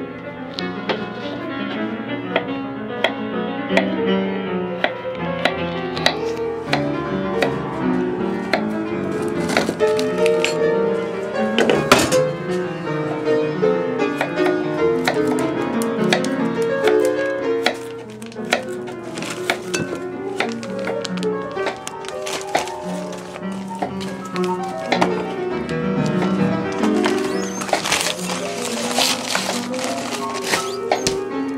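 Classical piano music playing steadily, with scattered light knocks and taps over it.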